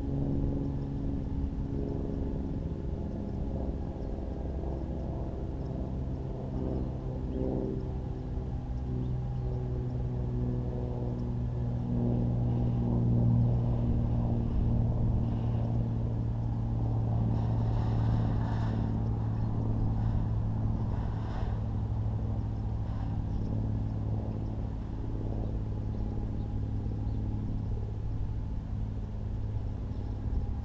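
An engine running steadily out of sight, a low drone that swells in loudness in the middle and eases off toward the end.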